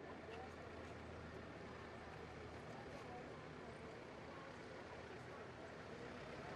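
Faint outdoor ambience: a steady low hum under an even haze of noise, with indistinct voices.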